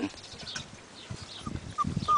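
Great Pyrenees puppies moving in grass, with light rustles and soft knocks near the end. A brief high squeak comes as one puppy yawns.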